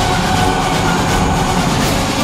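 Dense, steady rumbling drone of a dramatic soundtrack, with a held tone running through it.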